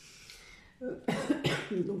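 A woman coughing, a short burst of coughs about a second in.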